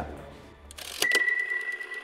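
Closing logo sound effect: a sharp click about a second in, then a steady high ring with rapid ticking clicks over it.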